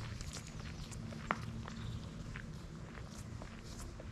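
Footsteps on a woodland path of dry leaves and gravel, a walker's irregular steps growing slightly fainter as he moves away.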